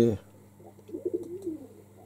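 Domestic pigeon cooing softly: a low, rising-and-falling coo from about half a second to about a second and a half in.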